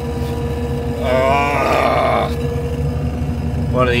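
Claas Dominator combine harvester's Mercedes diesel engine running steadily just after starting, heard from inside the cab as a low hum with a constant whine. About a second in, a man makes a wordless vocal sound lasting just over a second.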